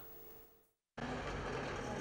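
Near silence for the first second, then steady outdoor street noise that cuts in suddenly: a light flatbed truck driving across an open square.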